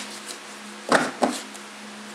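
A deck of tarot cards being picked up and handled on a cloth-covered table: a couple of short soft knocks and taps about a second in, and a faint one near the end.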